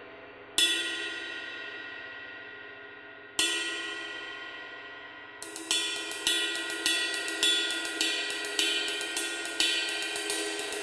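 A 24-inch, 4278 g Paiste Twenty Masters Collection Deep Ride cymbal of B20 bronze struck with a wooden drumstick: two single strokes, each left to ring out and decay slowly, then from about halfway a steady ride pattern with an accent roughly twice a second and lighter strokes between.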